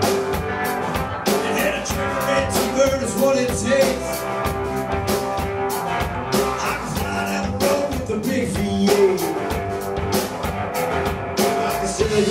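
Live roots rock-and-roll trio of electric guitar, drum kit and upright bass playing an instrumental break, the guitar carrying the melody over a steady, driving drum beat.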